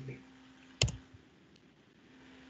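A single sharp click with a dull knock under it about a second in, then a faint tick: the click that advances the presentation slide.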